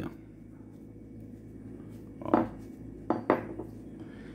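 Light metallic clinks and knocks from a metal ring handled against a wooden tabletop while a rope knot is tightened around it: one knock a little past two seconds in, then two quick clinks about a second later.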